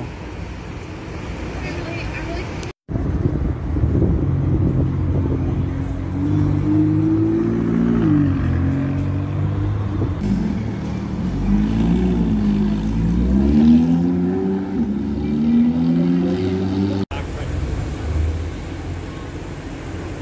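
Sports car engines in three short clips cut together. The longest, in the middle, is an orange McLaren's engine revving up and down several times as it pulls away, rising and falling in pitch.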